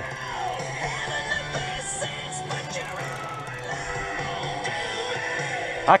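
Rock music with guitar playing from a radio on the boat, at a steady level.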